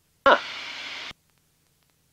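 Aircraft headset intercom opening on a short "huh": about a second of hissing cabin engine and wind noise comes through the microphone, then the voice-activated squelch cuts it off suddenly, leaving near silence.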